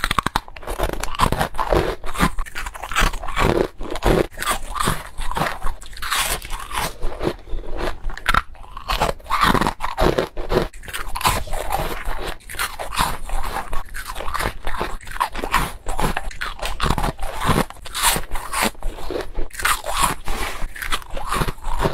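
Frozen foam ice cubes being bitten and chewed: a dense run of crisp crunches, several a second.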